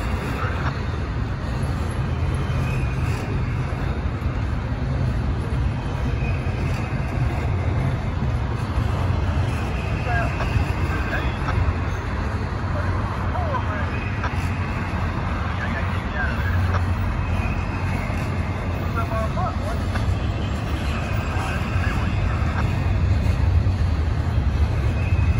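Double-stack intermodal container train's well cars rolling past, a steady low rumble of steel wheels on rail with a few brief high squeaks around the middle.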